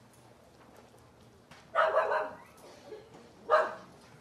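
A dog barking twice: one bark about two seconds in and a shorter one near the end, over quiet room tone.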